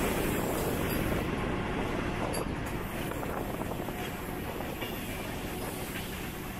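Mumbai suburban local train running, heard from its open doorway: steady noise of wheels on rails with a few clacks, growing gradually quieter.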